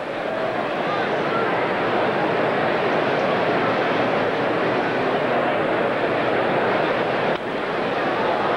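Ballpark crowd noise: a steady din of many voices from a large stadium crowd, dipping briefly near the end.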